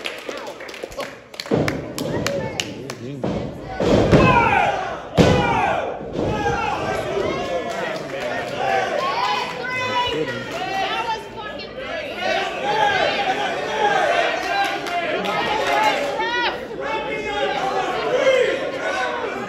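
Heavy thuds of wrestlers' bodies hitting the wrestling ring's canvas, a few in the first five seconds, then a crowd of voices shouting and chattering.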